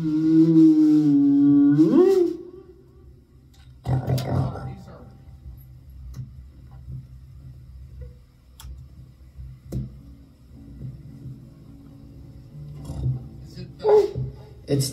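A voice holding a long note that slides down and then sweeps up, cut off about two seconds in. Then a guitar amplifier hums steadily, with a pop about four seconds in and scattered clicks, while a guitar cable is plugged in.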